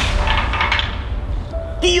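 An aerosol deodorant can, just burst by a rifle shot, sends out a hissing whoosh that dies away over about a second, with background music under it.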